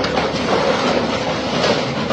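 Sheet metal and wooden debris clattering and scraping without a break as a Caterpillar backhoe loader's bucket tears down a small building.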